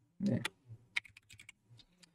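Typing on a computer keyboard: a quick run of about eight light key clicks, ending about a second and a half in, as a chart label's text is retyped.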